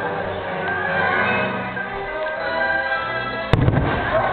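Fireworks show soundtrack music playing steadily, with one sharp, loud firework bang and a couple of smaller cracks about three and a half seconds in.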